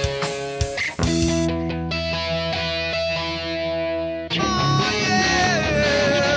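Hard rock song, instrumental passage with no singing: a held electric guitar chord rings for about three seconds, then the full band comes back in about four seconds in under a lead guitar line with string bends.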